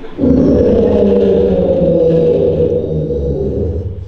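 An actor roaring in the part of an ogre: one long, loud roar that starts a moment in and fades out just before the end.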